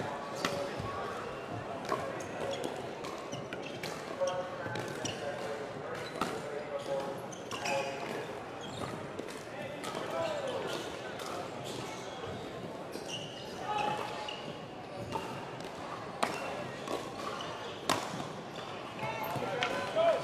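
Pickleball rally: paddles striking a hollow plastic pickleball in a string of sharp pops at irregular intervals, echoing in a large indoor hall.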